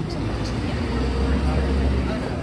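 Low rumble of a car engine running close by, getting stronger in the second half, over street noise and people's voices.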